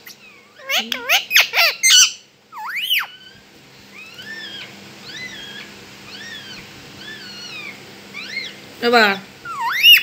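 Rose-ringed parakeet giving a run of soft, arching chirps about once a second, then a loud short squawk near the end followed by a rising call.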